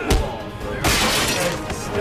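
Movie fight-scene sound effects over dramatic background music: a sharp hit just after the start, then a loud shattering crash about a second in that lasts about half a second.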